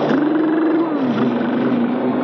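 Film soundtrack storm effect for an electrical storm: a loud, continuous roar with a low howling tone that bends up and then sinks about halfway through.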